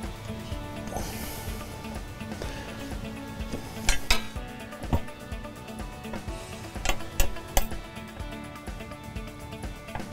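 Sharp metallic clinks of bolts and hardware against a cast-aluminum transmission pan as it is held up and bolted on: a pair of clinks about four seconds in, one near five seconds, and a cluster around seven seconds. Background music plays throughout.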